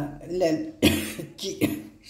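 A woman coughing: two short coughs a little under a second apart, amid her own talk.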